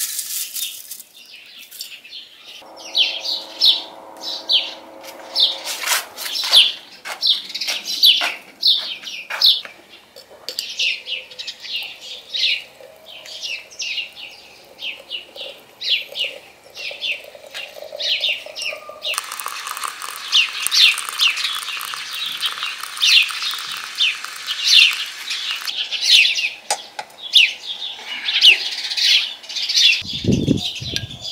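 Small birds chirping over and over. About two-thirds of the way in, hot water runs from a samovar's tap into a glass teapot for several seconds.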